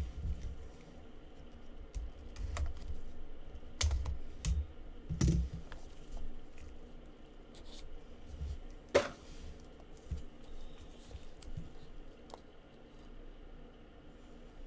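Gloved hands handling and opening a cardboard trading-card box, giving scattered light clicks, taps and knocks of cardboard, with sharper snaps about four, five and nine seconds in.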